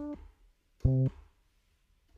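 Short bass notes played from a MIDI keyboard. One note cuts off just at the start, and a single short note sounds about a second in.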